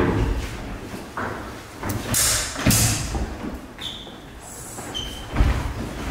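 Scattered knocks and thuds from a longsword sparring bout: steel feders striking and fencers' feet on a wooden floor, with a couple of short high rings.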